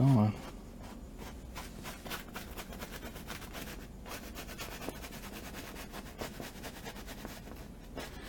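Faint, irregular light scratching and rubbing strokes on a painting's surface, as of hand work with a brush or cloth. A short vocal sound comes right at the start.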